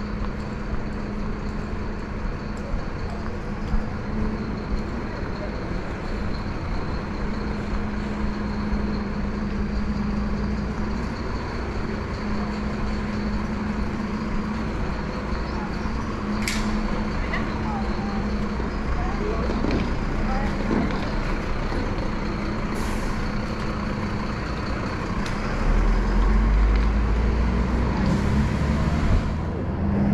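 Busy street ambience with a steady low hum and the voices of passers-by. Near the end a truck's engine rumble swells, and a sharp hiss of its air brakes lasts about a second and a half before cutting off suddenly.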